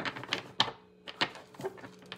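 Tarot deck being shuffled and handled: a run of short, irregular card clicks and snaps.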